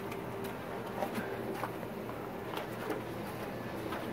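Quiet outdoor background with a few soft clicks and rustles from the camera being handled.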